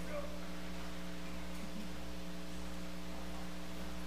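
Steady electrical mains hum with a faint hiss, holding one unchanging buzzing pitch with its overtones.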